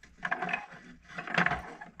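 Antique wall-mounted coffee grinder with a cast-iron mechanism and ceramic body, its crank turned by hand. The gears grind and rattle in two bouts, the second louder.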